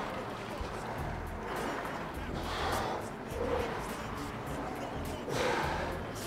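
Background gym music with a steady, repeating bass line, over which a man breathes hard under load during weighted walking lunges, with a few short, forceful exhales.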